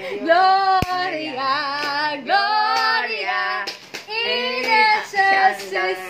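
A woman singing a melody in short phrases of held, wavering notes, with a brief click just under a second in.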